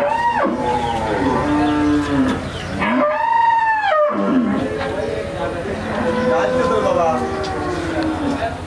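Cattle mooing: several calls one after another, the loudest about three seconds in, lasting about a second.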